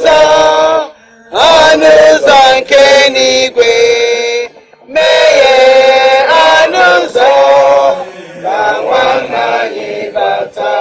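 A single voice chanting a funeral lament in long held, sliding notes, with two short breaks: about a second in and at about four and a half seconds.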